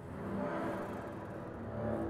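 Free-improvised acoustic music from a trio of double bass, soprano saxophone and voice: a dense, low, rumbling texture with a few held pitches, without a clear beat.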